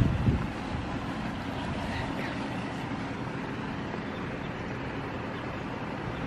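Steady wind noise on the microphone, with a brief louder low rumble right at the start.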